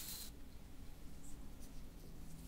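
A brush stroked through hair at the neck, a scratchy rustle that stops a fraction of a second in, followed by a few faint brief brushing scratches.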